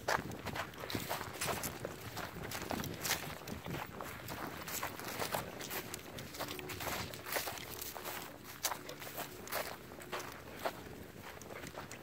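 A person's footsteps walking at a steady pace over dirt and dry grass, a run of short irregular steps.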